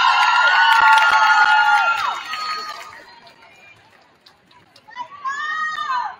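Several high-pitched voices cheering together in a long held "woo", fading out about three seconds in, with a few sharp claps among it. A single shorter high-pitched cheer rises and falls near the end.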